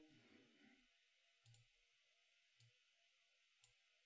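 Near silence broken by three faint computer mouse clicks, about a second apart.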